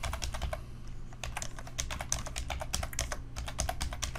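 Typing on a computer keyboard: a quick, uneven run of keystroke clicks as a short phrase is typed, with a brief pause about half a second in.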